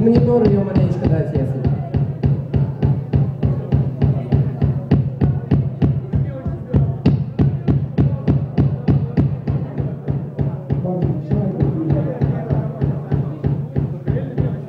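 Kick drum struck over and over in a steady stream, about four hits a second, played through the PA during a soundcheck while its level is being set.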